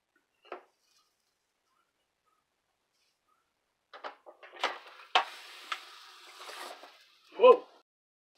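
Lid of a Brentwood electric tortilla maker clacking shut over a ball of corn dough: a few sharp knocks, then about two seconds of hissing as the dough steams and bursts apart between the hot plates. A short vocal exclamation near the end.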